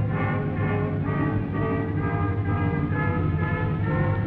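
Orchestral background score: a melody moving in short notes over a steady low bass.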